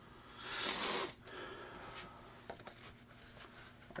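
A paper scratch-off lottery ticket rustling as it is handled and tossed aside: a brief hiss of card for about a second near the start, then softer rubbing and a few light clicks.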